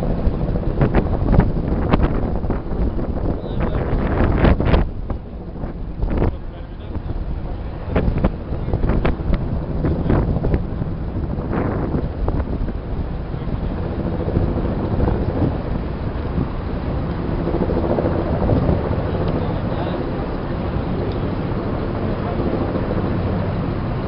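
Wind buffeting the microphone in gusts over a steady low rumble. The gusts die down after the first few seconds, leaving a steadier rumble.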